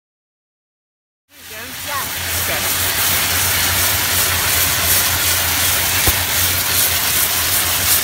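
AstraSteam Chemik steam jet cleaner blasting a jet of steam and chemical into a carpeted car floor mat: a loud, steady hiss that starts suddenly about a second in, with a low steady hum beneath it.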